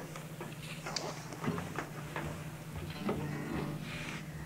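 Scattered soft clicks and knocks of studio handling over a low steady hum, with a few faint pitched notes about three seconds in.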